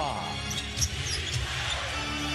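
Basketball arena sound during live play: crowd noise over a steady low hum, with a basketball bouncing on the hardwood court.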